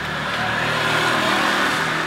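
A motor vehicle passing along the street, its engine and tyre noise swelling to a peak about a second in, then easing off slightly.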